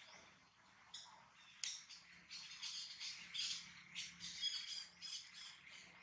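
Faint, high-pitched chirping and squawking animal calls, a quick run of short calls starting with a sharp click about a second and a half in and fading near the end.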